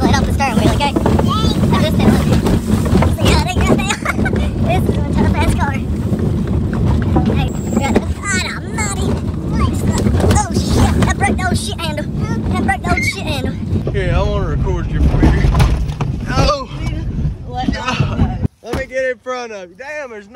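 Inside a small car driven hard over a rough dirt trail on three flat tires: a loud, steady rumble of engine, tyres and the jolting body, with passengers yelling and laughing over it. The rumble cuts off suddenly near the end, leaving only voices.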